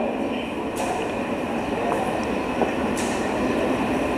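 Steady, even background noise with no speech, a constant hiss over a low rumble.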